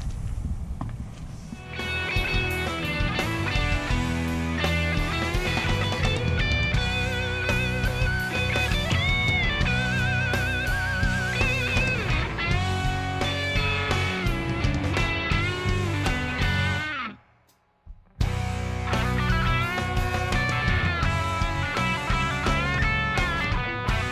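Background music led by electric guitar, starting about two seconds in, dropping out briefly about three quarters of the way through and then resuming.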